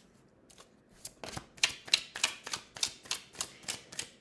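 A tarot deck being shuffled by hand: a steady run of sharp card slaps, about three a second, starting about a second in.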